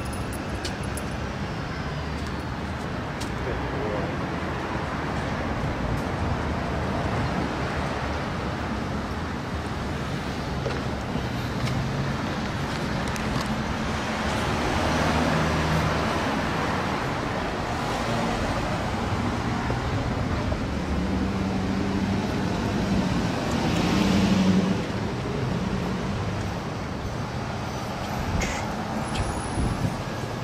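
Steady street traffic noise, with passing vehicles swelling louder about halfway through and again a few seconds later.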